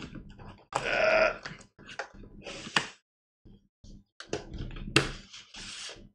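Cardboard motherboard box being opened: the inner box slid out of its printed cardboard sleeve, with scrapes, taps and knocks of cardboard and a rustling slide near the end. A short throaty sound about a second in.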